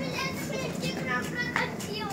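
Young children's voices, high-pitched chatter and calls while they play.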